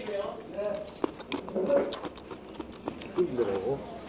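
Metal spoon and chopsticks clinking against bowls of soup as people eat: a few sharp, short clinks. Quieter voices talking underneath.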